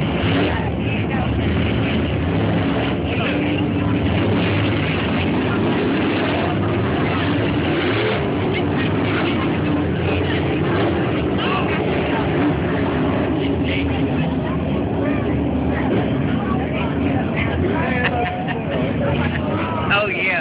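A pack of dirt-track late model race cars running together around a dirt oval, their engines making one steady drone.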